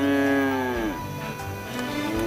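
A bull mooing: one long call that falls away about a second in, then a second call beginning near the end, over background music.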